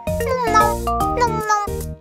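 Children's cartoon music with a cartoon cat's voice over it, giving several meow-like calls that slide down in pitch.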